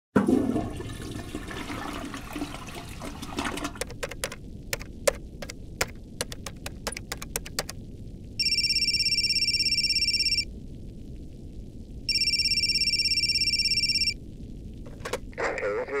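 A telephone ringing twice, each ring a trilling electronic tone about two seconds long with a short pause between. Before it comes a crackling noise and then a run of sharp clicks, and a voice comes in right at the end.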